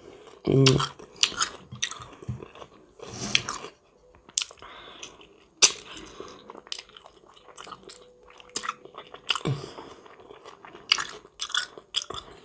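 Close-up wet chewing and lip smacking of a person eating soft, lightly salted ivasi herring with her fingers. The chewing comes with many short sharp mouth clicks and a couple of brief voiced sounds, one about half a second in and one near the end.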